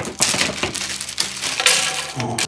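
Zip-top plastic bag of jigsaw puzzle pieces being pulled open and handled: continuous crinkling of the plastic with the pieces shifting inside.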